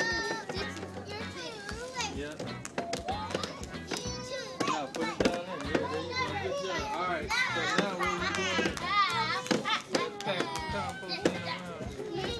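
Many young children talking and calling out over one another in high, excited voices, with background music underneath.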